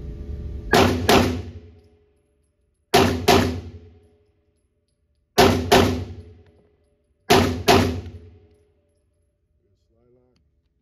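Tisas 1911 Night Stalker 9mm pistol fired in four controlled pairs (doubles), the two shots of each pair a fraction of a second apart and the pairs about two seconds apart. Each pair rings on briefly in the reverberant indoor range.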